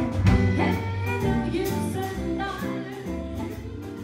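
Live jazz-blues band playing: a woman singing with electric guitar accompaniment.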